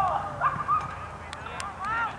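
Repeated short honking calls, several overlapping, each rising and then falling in pitch.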